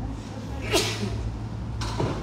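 A person's short, breathy vocal sound, falling in pitch, about three quarters of a second in, over a steady low rumble.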